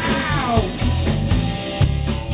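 Live rock band playing, with electric guitars, bass and drum kit. In the first half second a high wailing note slides steeply downward over the band.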